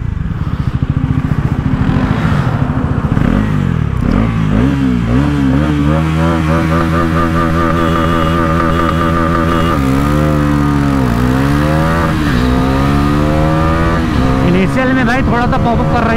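Bajaj Pulsar NS400Z's 373cc single-cylinder engine revved in short blips, then held steady at high revs for a few seconds before a full-throttle launch from a standstill, the revs dipping and climbing again through quick upshifts.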